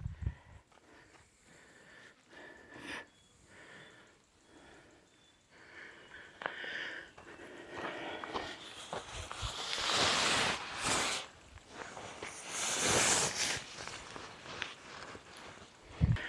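Rustling and swishing of nylon hammock fabric as it is lifted and pulled into position, with light scuffs. The rustling comes in two louder swishes a few seconds apart in the second half.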